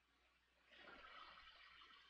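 Near silence: room tone, with a faint soft hiss starting a little past a third of the way in.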